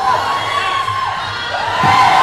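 Courtside spectators shouting and cheering during a basketball game, with long drawn-out high yells, one falling off just past the middle and another rising near the end.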